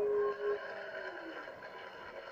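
A soprano's high held note ends with a quick downward slide, leaving a soft soundtrack of held tones that sink slowly in pitch, played back through laptop speakers.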